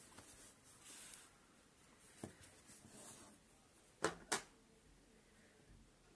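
Soft rustling of white yarn being drawn through crocheted fabric with a yarn needle, coming in a few short passes. Just after four seconds there are two sharp clicks in quick succession, the loudest sounds here.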